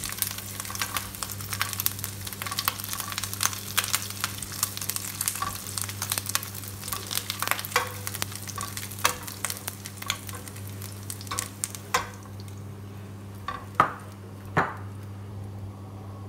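Chorizo slices frying and crackling in their own rendered fat in a nonstick fry pan, with a silicone spatula scraping and clicking against the pan as the slices are lifted out. The sizzle dies down about three quarters of the way through as the pan empties, leaving a few knocks of the spatula.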